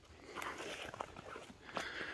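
Footsteps on stony, leaf-strewn ground: a few soft, irregular scuffs and clicks of loose stones underfoot.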